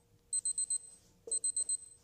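Electronic alarm clock beeping: quick groups of four high beeps, two groups about a second apart.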